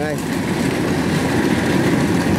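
Kubota rice combine harvester running steadily while it cuts rice, its engine and threshing machinery making an even, dense mechanical noise.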